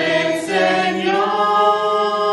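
Small mixed group of men's and women's voices singing a Spanish-language hymn in harmony, unaccompanied, holding a long chord from about half a second in.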